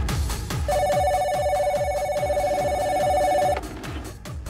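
Desk telephone ringing: one warbling two-tone ring lasting about three seconds, over electronic music with a steady beat.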